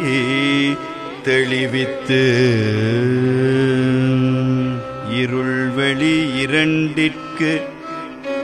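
A man singing a Tamil devotional hymn in Carnatic style, drawing out long, ornamented notes with a held note through the middle, accompanied by violin.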